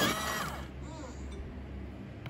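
Bostitch personal electric pencil sharpener running and grinding a wooden pencil, stopping about half a second in as the pencil is drawn out.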